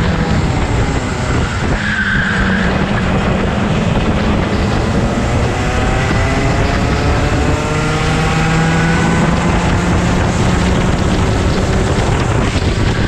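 Go-kart engine running at speed, heard from on board; its pitch climbs steadily from about five to ten seconds in as the kart accelerates. A brief high squeal about two seconds in.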